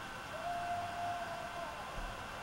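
A faint single held tone, sliding up slightly as it begins and lasting a little over a second, over a quiet steady background hum.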